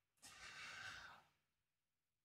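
A man's faint breath, lasting about a second.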